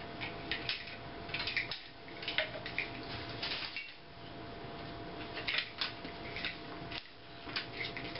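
Irregular small clicks and rattles from a beach cart's metal frame and bungee strap hooks being handled, as tangled bungee straps are worked loose.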